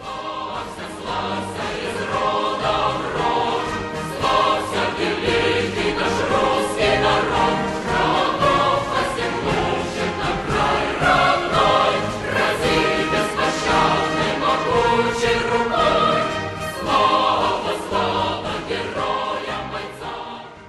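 Choral music: a full choir singing with orchestral accompaniment, loud and continuous.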